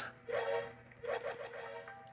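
A man's quiet wordless vocal sounds: a short murmur near the start, then a longer low hum from about a second in.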